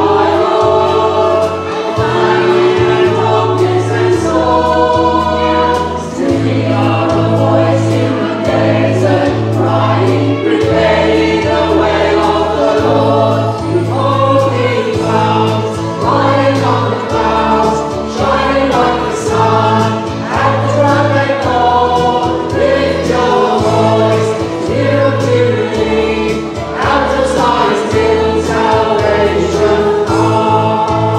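A hymn sung by many voices with instrumental accompaniment. Held bass notes change every second or two beneath the singing.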